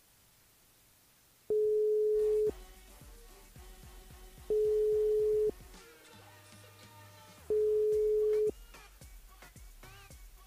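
Telephone ringback tone heard over the line as an outgoing call rings unanswered: a steady single-pitch tone about a second long, sounding three times at three-second intervals. Faint background music plays between the rings.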